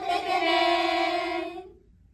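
A group of young women's voices calling out together in unison: one drawn-out, sing-song shout that is held for about a second and a half and then stops.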